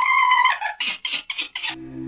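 A high, squeaky held note about half a second long, followed by a quick run of short squeaky sounds: a cartoonish sound-effect stinger.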